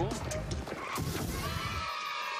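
An animal-cry sound effect in a TV promo: a drawn-out, slightly wavering call in the second half, over voices.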